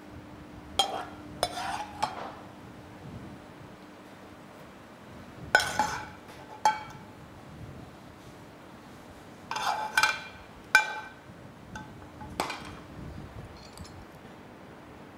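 A metal serving spoon clinking against a metal frying pan and a ceramic plate as pasta in sauce is served out: a series of irregular clinks, several ringing briefly, with a faint steady hum beneath.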